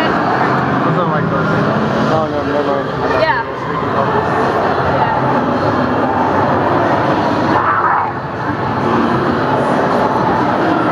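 Indistinct voices over the steady din of a busy room, with one voice clearest a couple of seconds in.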